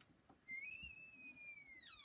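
A faint, high, drawn-out whistling tone that starts about half a second in, rises slightly, holds, and then slides steeply down near the end.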